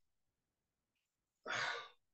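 Near silence, then about one and a half seconds in a woman's short audible breath lasting about half a second.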